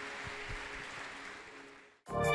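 Crowd noise from a large congregation in a hall, an even wash of sound that fades out to near silence near the end.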